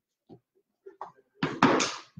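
Plastic lids of chalk paste jars being opened and set down on the craft table: a few light taps, then a louder clatter of knocks about a second and a half in.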